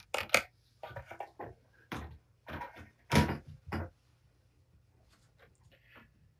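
A run of light, irregular knocks and rustles from handling kittens around a glass-topped kitchen scale, stopping about four seconds in.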